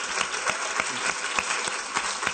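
Large audience applauding: dense, steady clapping from many hands.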